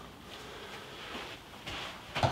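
A few faint, soft shuffles and footsteps on an artificial-turf hitting mat in a quiet, small room.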